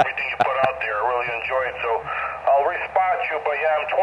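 A distant ham operator's voice received on single-sideband through a Yaesu FT-818 portable transceiver's speaker: talk that sounds thin and cut off in the highs, with steady band hiss underneath.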